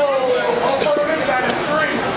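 Several people talking and calling out in a large echoing hall, with one long drawn-out call near the start.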